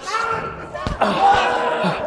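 A boxing-glove punch landing with a sharp smack about a second in, amid shouts and exclamations from onlookers.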